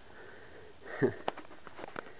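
A person sniffing once, about a second in, followed by a light click.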